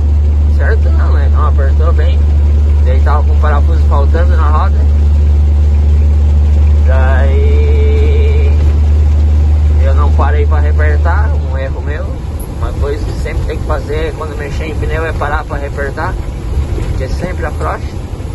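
Diesel truck engine droning low inside the cab while driving, the drone falling away about eleven seconds in, with a voice talking on and off over it.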